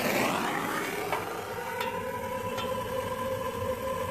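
Handheld propane torch burning with a steady hiss and a faint, even tone, its flame aimed into a burner pot of diesel fuel to light it.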